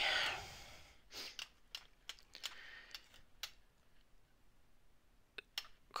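Long thin blade chopping soft polymer clay into small chips against a hard work surface: irregular light taps and clicks, several in the first half, sparser after, with two close together near the end.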